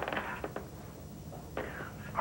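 Faint breathy, whispered vocal sounds without clear words, with a small click about half a second in and a short breathy burst near the end.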